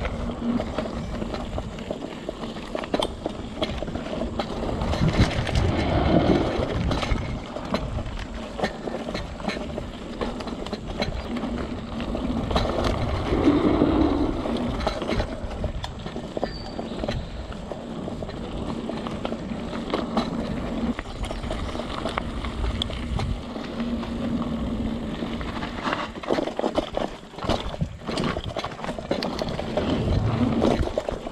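Mountain bike ridden over a dirt trail: tyres rolling over the ground and the bike rattling over bumps, with frequent clicks and knocks.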